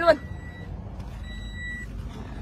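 Toyota Vios dashboard warning chime beeping twice, a steady high tone about half a second on and half a second off, repeating: the car's door-open warning with the driver's door standing open.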